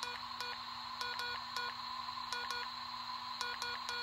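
Spy Gear toy walkie-talkie sending Morse code: a run of electronic beeps, mostly short with a few longer dashes, over a steady faint electronic hum.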